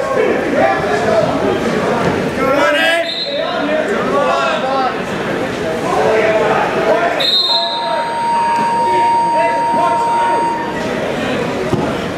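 A gym scoreboard buzzer gives one long steady tone about seven seconds in and sounds for roughly three and a half seconds. Shouting voices from coaches and spectators in a large, echoing hall run throughout.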